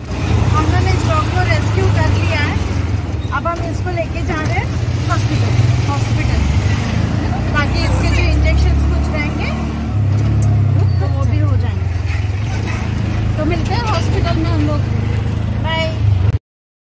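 Auto-rickshaw engine and road noise heard from inside the open cabin, a loud steady low drone. Its pitch drops around six seconds in and rises again near ten seconds.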